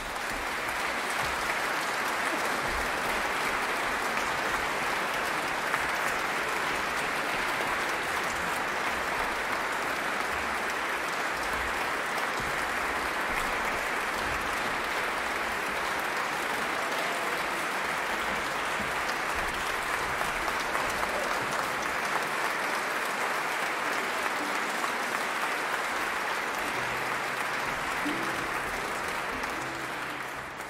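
Concert audience applauding steadily, the clapping fading away near the end.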